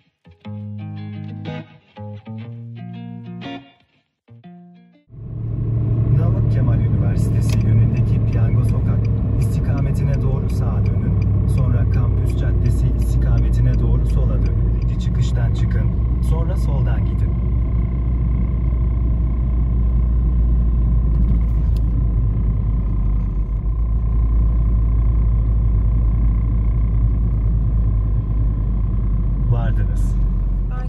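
Guitar music for the first five seconds, then a moving car's cabin noise: a loud, steady low rumble of road and engine noise, with scattered clicks and rattles in the middle stretch.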